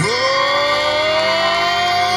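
Live rock band music: one long held note swoops up sharply at the start and then climbs slowly in pitch over a sustained backing chord.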